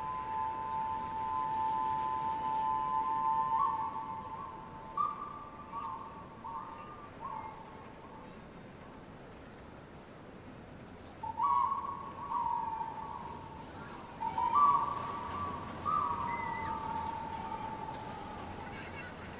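A small hand-held wind instrument, cupped in both hands and blown, playing soft hooting notes with two close pitches sounding together. It holds one long note, then plays short notes that step up and down, pauses for a few seconds, and plays another short phrase.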